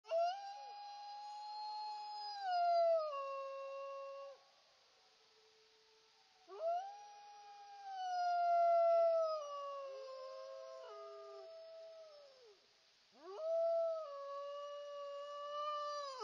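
A wolf howling: three long howls, each rising quickly to its top note and then sliding lower, with silent gaps between them.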